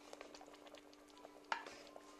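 Sauce simmering in a cooking pot: faint scattered bubbling pops over a low steady hum, with one sharp click about one and a half seconds in.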